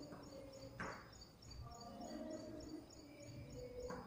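Chalk scraping on a blackboard as a word is written, with two brief strokes, one about a second in and one near the end. Behind it runs a faint, regular high chirping, about two or three chirps a second.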